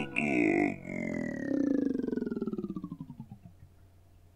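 A cappella singer's closing vocal sound effect: a buzzing, pulsing voice sliding steadily down in pitch, its pulses slowing as it fades out about three and a half seconds in.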